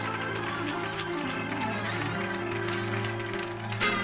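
Live gospel band accompaniment in an instrumental break between sung lines: held chords with light percussion.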